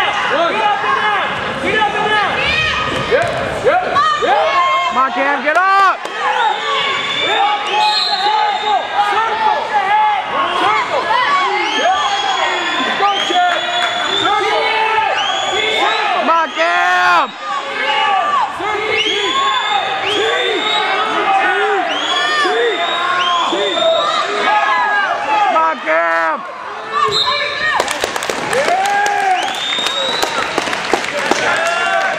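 Many voices shouting and cheering over one another in an echoing gym, with thuds and sneaker squeaks on the wrestling mat; a burst of applause comes near the end.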